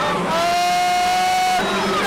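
Music with a long held high note, rising slightly, and a second held note starting near the end, over the steady drone of racing stock-car engines.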